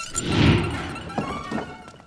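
A low dramatic boom in the score swells up and fades away over about a second and a half. Two short wooden knocks follow as a wooden door is pushed open.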